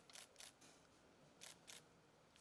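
Faint clicks of press photographers' camera shutters: a quick run of three, then two more about a second later.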